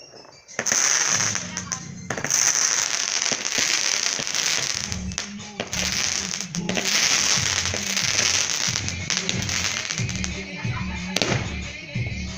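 Fireworks crackling and hissing, a dense spray of sparks that starts suddenly about half a second in and carries on, with music and a low, regular beat coming in underneath from about halfway.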